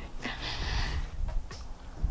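A woman's short breathy exhale, like a sigh, lasting about half a second, over a low steady rumble.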